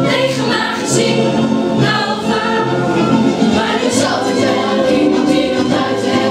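Music: a chorus of young voices singing a musical-theatre number in unison over an instrumental backing track with a steady bass line.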